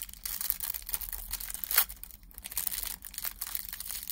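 Plastic packet of nail transfer foil crinkling and tearing as it is handled and opened by gloved hands, a dense run of crackles with one sharp snap a little under two seconds in.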